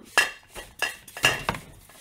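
Large glass storage jars clanging together as one is grabbed from among the others: four sharp clinks with a short ring.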